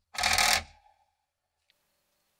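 A brief metallic clatter, about half a second long, as small metal parts and the body of a pressed-steel toy dump truck are handled during reassembly, followed by a few faint ticks.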